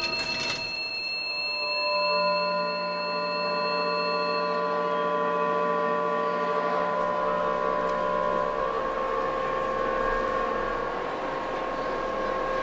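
A held drone of several steady tones, some dropping out during the first half while others carry on, over a noisy haze of shopping-centre ambience that builds in the upper range.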